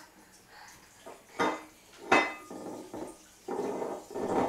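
Clinks and clatter of dishes and cutlery: two sharp clinks about one and a half and two seconds in, the louder second one ringing briefly, then more clattering near the end.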